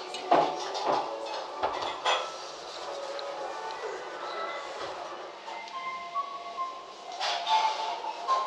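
A few sharp clinks and knocks of tableware in the first couple of seconds of eating at a breakfast table. Soft background music with held notes comes in over the second half.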